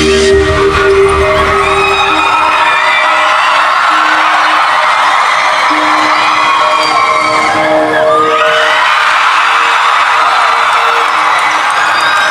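Large arena crowd cheering and screaming, full of high whoops, over a held synth chord from the PA. The deep bass fades out in the first couple of seconds, leaving the chord and the crowd.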